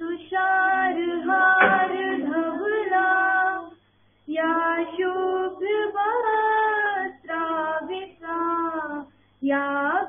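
Female voice singing a slow devotional hymn to Saraswati, held melodic phrases with a short break about four seconds in and another near the end, heard through thin video-call audio.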